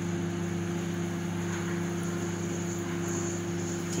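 Steady, unchanging hum of a running electric motor, several low tones held level, with a faint hiss above it.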